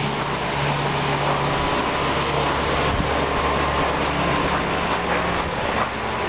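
Steady mechanical hum of an outdoor air-conditioning unit running, with a faint high tone over it.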